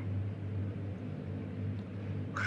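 A steady low hum with a faint even hiss beneath it: the background noise of the recording, heard during a pause in the talk.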